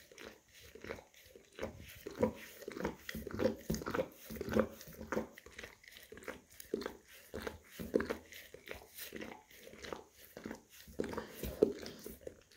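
English cream golden retriever licking and grooming his front paw up close: short licks and nibbles in an irregular run, a few a second, with one sharper, louder one near the end.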